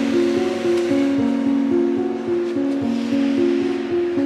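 Background music: a melody of held notes that move up and down in steps, over a steady hiss.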